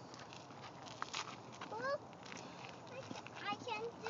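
Footsteps on a dry dirt trail, with a small child's wordless high-pitched vocal sounds: one rising call about two seconds in and a few more near the end.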